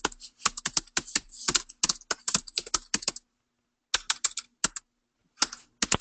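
Typing on a computer keyboard: a quick run of keystrokes for about three seconds, then two shorter runs after brief pauses, over a faint steady hum.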